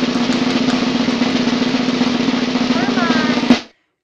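Snare drum roll sound effect, fast and even, ending with one loud hit about three and a half seconds in, then cutting off.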